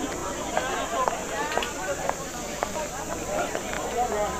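Indistinct chatter of several people, with scattered sharp clicks and knocks.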